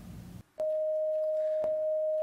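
A steady, single pure electronic tone that begins a little over half a second in and holds at one pitch: the sine tone of a colour-to-sound head sensor sounding the colour purple, with a short click as it starts and another about a second later.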